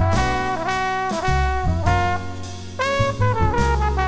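Jazz big band playing an instrumental passage live, the brass section to the fore with trumpets and trombones in chords, over bass and drums.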